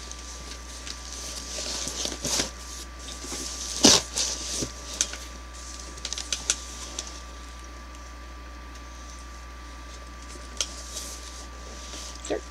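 Cardboard advent calendar boxes being handled and shifted on a table: rustling, one sharp knock about four seconds in, several lighter taps, then quieter handling.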